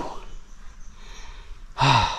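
A man sighs aloud near the end, a short breathy exhale with some voice in it that falls in pitch. Before it there is only faint background hiss.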